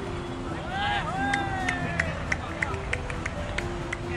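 A voice calling out across an open cricket ground in a long, drawn-out shout about a second in. It is followed by a run of short, sharp high chirps or clicks over a faint steady hum.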